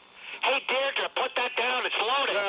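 Talk-radio speech off an AM broadcast recording, thin-sounding, resuming after a pause of about half a second.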